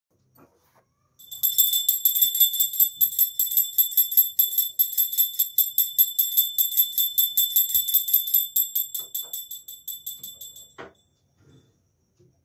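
Hand-held puja bell (ghanti) rung rapidly and steadily, several strikes a second, with a bright high ring, growing fainter toward the end and stopping with a knock about eleven seconds in.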